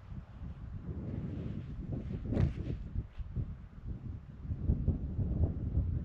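Wind buffeting the microphone in uneven gusts, a low rumbling rush that rises and falls.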